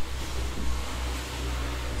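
Steady low hum under an even hiss: room and recording noise, with no speech.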